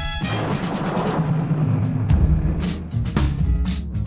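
Instrumental passage of a song with a heavy bass line and drums. Just after the start a wash of noise swells and fades over about two seconds, then sharp drum hits come in over the bass.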